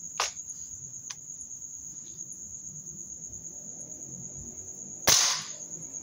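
Crickets chirping steadily, then a single sharp shot about five seconds in, the loudest sound here.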